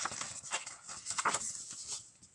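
Pages of a large glossy booklet being turned and handled: a series of short papery swishes and rustles.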